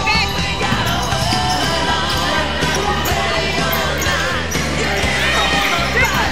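Basketball bouncing on a gym floor during play, over background music with a steady bass line.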